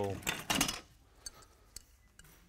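A man's voice trails off, then a short breathy burst, followed by a couple of faint metallic clicks as a steel hex nut is turned by hand onto the end of a threaded rod, the nut reluctant to start on the threads.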